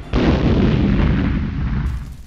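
Explosion sound effect: a sudden blast just after the start, then a heavy rumble that dies away over about two seconds.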